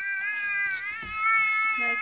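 Jack-Jack interactive baby doll playing a sound effect: one long, slightly wavering high-pitched cry.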